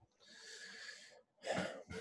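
A man's audible in-breath into a close microphone, lasting about a second, before he speaks again near the end.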